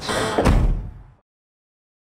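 A car trunk lid slammed shut, with one loud thud about half a second in. The sound dies away and cuts off to silence after about a second.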